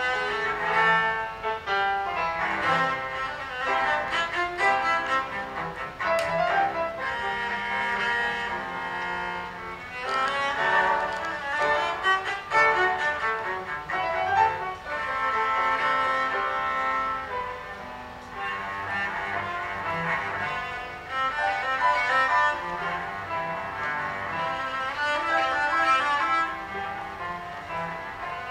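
Cello played with the bow in a classical solo, much of the line in its high register, with grand piano accompaniment.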